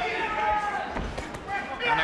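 Boxing arena ambience with voices, and a few dull thuds around the middle as gloved punches land to the body in close.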